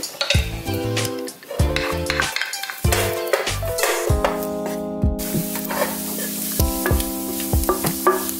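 Diced bacon sizzling in a nonstick frying pan and scraped around with a wooden spatula, the sizzle becoming a dense steady hiss from about five seconds in. Background music with sustained chords plays throughout.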